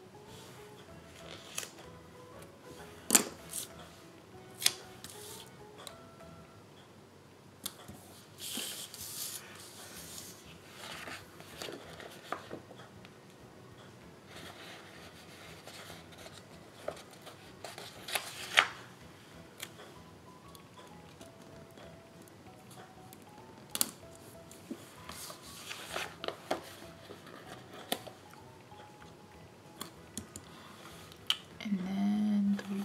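Small craft scissors snipping through sticker paper, with sheets of paper rustling and sliding and a few sharp clicks, the loudest about three seconds in and again past the middle. Quiet background music plays underneath.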